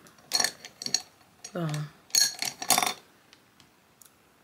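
Small hard makeup containers and tools clinking and clattering as they are handled and set down, in two short bursts about half a second in and again from about two seconds. A brief voiced sound comes between them.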